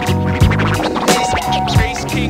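Hip hop beat with drums and bass, and turntable scratching cut over it.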